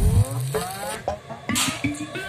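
Electronic dance music in a sparser passage: a run of rising synth sweeps, then short stepped synth notes over a bass note near the end.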